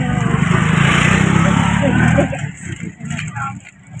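A motor vehicle going by, its engine rumble and road noise swelling to a peak about a second in and falling away sharply a little after two seconds, with faint voices over it.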